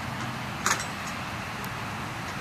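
Steady open-air background noise, with one sharp click about two-thirds of a second in.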